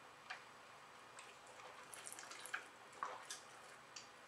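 Someone chugging from a glass bottle: faint, irregular gulps and liquid clicks in the bottle neck, several over a few seconds.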